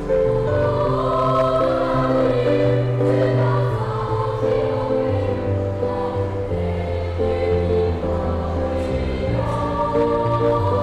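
Elementary school children's choir singing a song together, with steady low accompanying notes beneath the voices.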